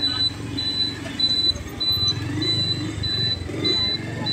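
Street traffic and the rumble of a vehicle riding along a city road, with a high electronic beep repeating steadily about every half second throughout.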